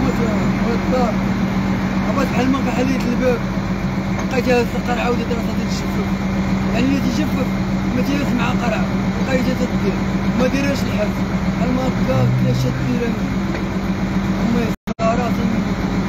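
A man talking steadily over street traffic noise, with a constant low hum underneath. The audio drops out for a moment near the end.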